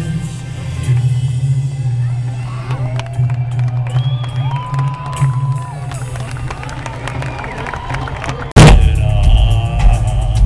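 Live synth-pop band music heard from the audience, with a steady low bass drone, pitched synth or voice glides and crowd noise. About eight and a half seconds in, the sound drops out briefly and jumps abruptly into louder music.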